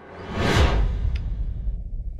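Handling noise on a webcam's microphone as the device is swung round: a rushing whoosh that peaks about half a second in, then a low rumble.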